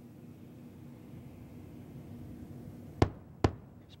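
Two sharp booms about half a second apart near the end, over a low steady rumble: the double sonic boom of Space Shuttle Endeavour descending to land.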